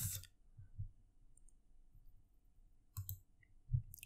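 A computer mouse clicked twice in quick succession about three seconds in, against quiet room tone.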